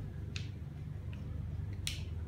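Small sharp clicks of the metal sections of an e-hookah pen being twisted apart by hand at its battery end: one click a third of a second in, two faint ticks, and a louder click near the end, over a steady low hum.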